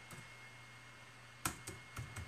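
A few short keyboard clicks from typing, the sharpest about a second and a half in, over a quiet room with a faint steady hum.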